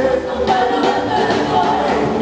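Gospel choir singing with a live band, drums keeping a steady beat.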